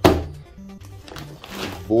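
A boxed pack of Nerf Vortex disc ammo set down on a table with a single thud right at the start, over background music.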